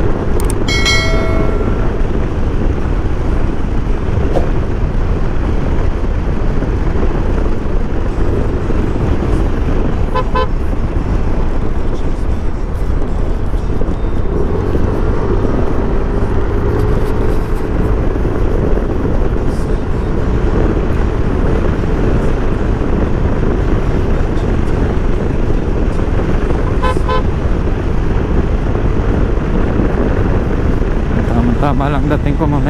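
Wind rushing over the microphone and a Yamaha NMAX scooter running at road speed, a loud steady rumble. About ten seconds in, and again near the end, a horn gives a quick run of short toots.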